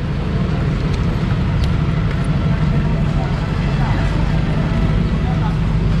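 A motor vehicle's engine idling with a steady low hum, against street traffic noise.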